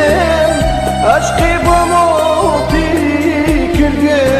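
Kurdish pop song: a voice singing a gliding melody over a steady beat and accompaniment.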